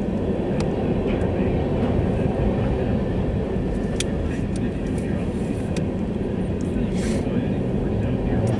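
Diesel freight locomotives passing close by, their engines a steady deep rumble. There is a single sharp click about halfway through.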